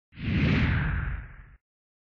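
A whoosh sound effect: one swell of rushing noise over a deep rumble, lasting about a second and a half, fading and then cutting off abruptly.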